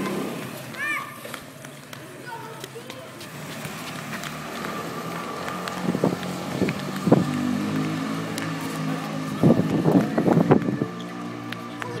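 Children's voices and calls in an open courtyard, with a bright, high call about a second in. Steady low tones sit beneath them in the second half, and a few clusters of sharp knocks come near the middle and toward the end.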